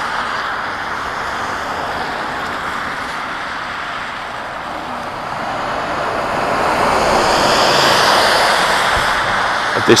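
Road traffic on a busy multi-lane road: a steady rush of tyre and engine noise from passing cars and vans. It grows louder in the second half, peaking about eight seconds in as a vehicle passes close by.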